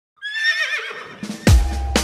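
A live band starts a song. First comes a short wavering high sound that falls in pitch. About one and a half seconds in, a loud bass drum and bass hit marks the band's entry, and a second hit comes at the end.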